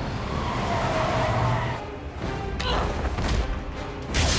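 Action-film soundtrack mix: music score over car and street-traffic sound effects.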